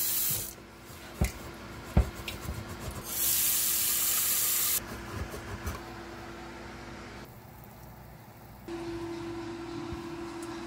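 Water poured from a glass into a stainless steel distiller boiler pot, splashing briefly at the start and again for about two seconds from three seconds in. Two sharp knocks fall between the pours, the pot being handled in the sink, and a low steady hum comes in near the end.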